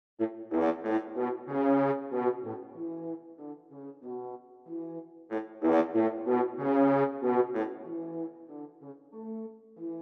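Miroslav Philharmonik 2's sampled French horns play a staccato pattern in A major: a phrase of short, detached notes that starts over about five seconds in. In the last few seconds the notes turn softer as the pattern's intensity slider, which scales the MIDI velocities, is pulled down.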